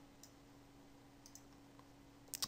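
Near silence: faint room tone with a low steady hum and a few faint computer-mouse clicks, one just after the start and a quick pair a little past the middle.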